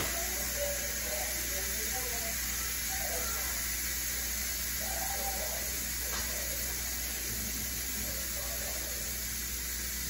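Steady background hiss and low hum of kitchen room tone, with faint, indistinct voices now and then.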